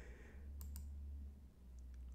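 A few faint computer-mouse clicks, two close together about half a second in and more near the end, over a low steady hum.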